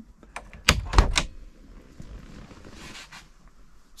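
Small galley fridge door on a boat being pushed shut: a few light clicks, then three sharp knocks about a second in as the door and its latch close.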